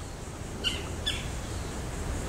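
A bird chirps twice, short high calls about half a second apart, over a steady low background rumble.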